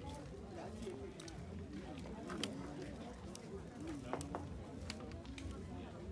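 Faint background chatter of voices, with no words near enough to make out, and scattered light clicks and knocks.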